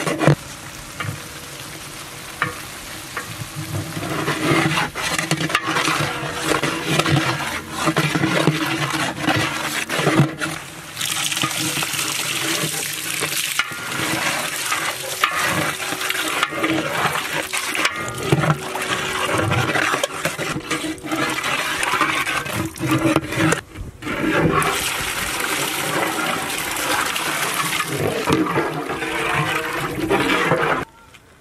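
Water pouring from a metal vessel into a large aluminium cooking pot of hot fried masala paste, splashing as a ladle stirs it into a curry gravy. The pouring grows louder a few seconds in.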